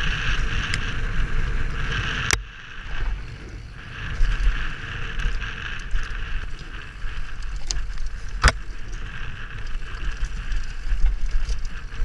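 Wind rushing over a helmet-mounted camera's microphone and the bike rattling over a dirt trail during a fast mountain-bike descent, with two sharp knocks, one about two seconds in and one about eight seconds in.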